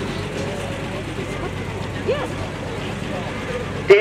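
A vehicle engine running steadily, with faint distant voices.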